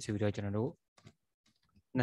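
Speech, then a few faint computer keyboard keystrokes in the pause about a second in, before the speech resumes.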